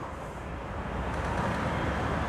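Steady low rumble and hiss of background noise, growing slightly louder over the two seconds.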